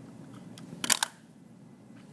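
A short, sharp double click of hard plastic being handled, a pen or marker tool, a little under a second in, over faint room noise.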